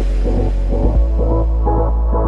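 Electronic music track: a deep steady bass under short repeating synth notes. The treble is filtered away across these seconds, so the sound grows duller.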